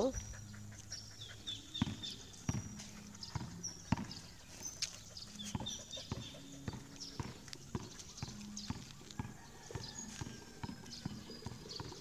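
A basketball being dribbled on a concrete court: a steady run of faint bounces, about two a second, with birds chirping.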